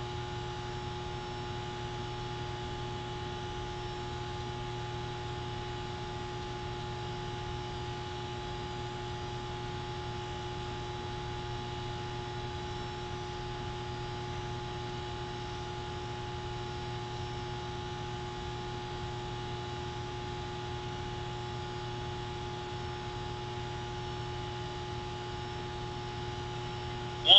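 Steady electrical hum with background hiss and a few thin constant tones, unchanging and with no other sound.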